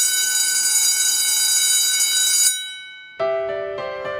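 Electric school bell ringing loudly and continuously, then cutting off suddenly about two and a half seconds in. Soft piano music starts with single notes shortly after.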